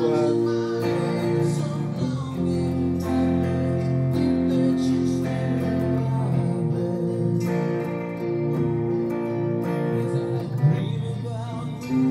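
Electric guitar playing held chords that change every second or two.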